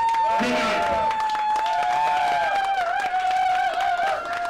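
Small bar crowd clapping and cheering, with long held whoops over the clapping.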